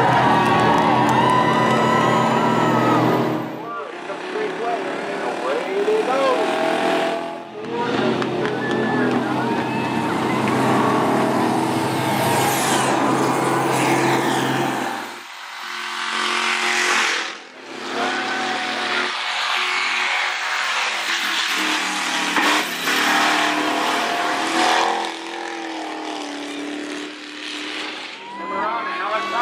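Engines of the event vehicles, a school bus among them, running and revving as they drive the track, mixed with shouting and voices from the crowd. The sound drops out briefly several times.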